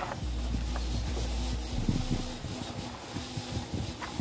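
Rubbing and low rumble from a handheld camera microphone being moved, with a few faint clicks. The rumble is strongest in the first second and a half.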